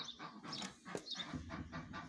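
Sheep pulling and chewing hay from a hay net: quick, irregular crunching and rustling, about five a second.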